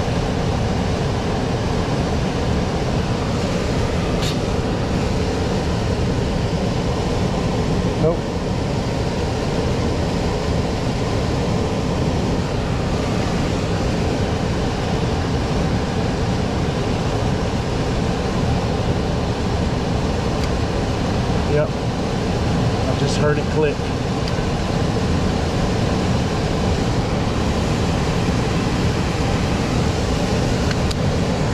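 Blower of a Bryant electric-heat air handler running steadily with its cabinet open, a constant rush of air and motor noise. A few faint clicks sound over it, around 4, 8, 21 and 23 seconds in, while the control wiring is handled and R is jumped to W.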